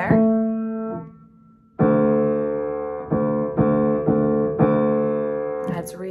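Piano notes demonstrating a low pitch. One note fades out, and after a short pause a lower note is struck and then repeated about twice a second.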